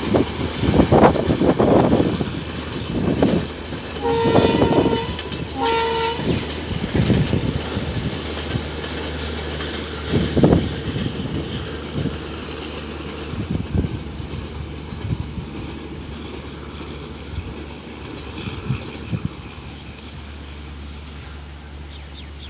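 The Maitree Express, a diesel-hauled passenger train, passing with a steady low engine drone and wheels clattering over the rail joints. Its horn sounds twice about four and six seconds in, the first blast longer. The sound fades gradually as the train moves away.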